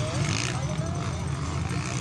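Engines of distant 150 cc motocross bikes racing on a dirt track, heard as a steady low drone, with spectators' voices over it.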